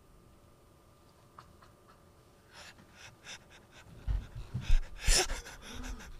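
Near-quiet room at first, then from about halfway in a person's short, breathy, stifled laughs and breaths that grow louder toward the end.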